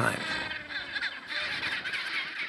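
Chinstrap penguin colony calling: many birds' calls overlapping in a steady, high-pitched din.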